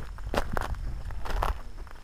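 Footsteps on a mountain trail, about one step a second, each a short crunch, over a steady low rumble.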